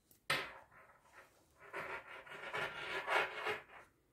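Handling noise from the camera: a sudden knock a moment in, then about two seconds of rough rubbing and scraping against the microphone as the camera is brought close in on the knitting needle.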